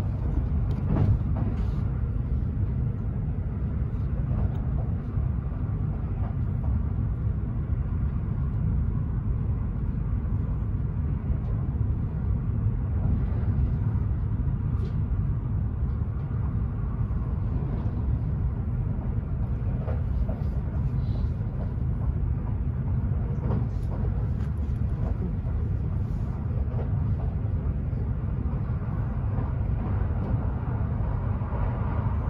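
Kintetsu 80000 series "Hinotori" limited express train running at speed, heard from inside the passenger cabin: a steady low rumble of wheels on rail, with a few faint clicks.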